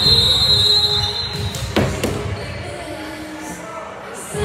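Music playing through a gym's speakers over volleyball warm-up, with a high steady tone for about the first second and a half. A single sharp ball hit is heard just before two seconds in.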